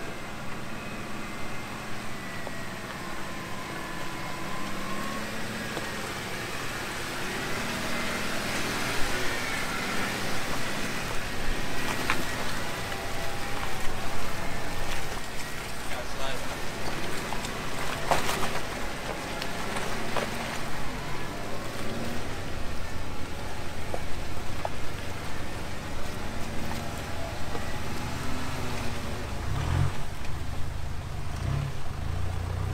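Four-wheel drives crawling slowly over a rutted dirt track, a Jeep Wrangler and then a Mitsubishi Challenger, engines running low, with sharp knocks about twelve and eighteen seconds in.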